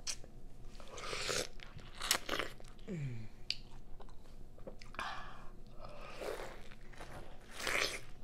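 Bites torn from a whole peeled pineapple with the teeth, the fibrous flesh crunching in several short bursts. A short falling "mm" from the eater about three seconds in.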